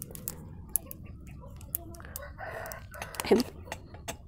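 Plastic wacky track fidget clicking as its links are twisted and snapped into new angles, a scatter of sharp separate clicks. About three seconds in, a short louder rising call sounds over them.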